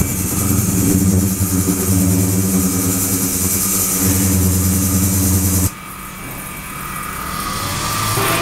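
Ultrasonic cleaning tank with two 28/72 kHz, 300 W transducers and a liquid-circulation system running: a loud, steady low buzz with hiss from the driven transducers and the agitated water. A little over halfway through, the buzz and hiss drop off abruptly, leaving a quieter sound that slowly builds again.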